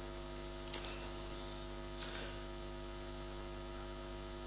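Steady electrical mains hum with a buzz of many overtones from the microphone and sound system, with two faint brief noises about a second and two seconds in.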